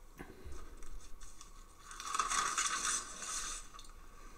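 Scrapbook page being turned and handled: a papery rustle and crinkle, loudest from about two seconds in for over a second, with a few small clicks before it.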